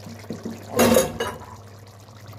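Chickpea curry gravy bubbling in a cooking pot, with one short, louder slosh of liquid about a second in, over a faint steady low hum.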